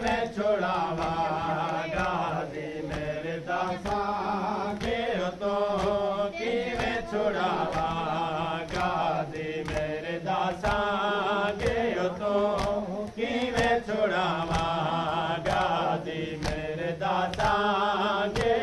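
Men chanting a noha, a Shia mourning lament, in repeated melodic phrases, over a steady rhythm of sharp beats from chest-beating (matam).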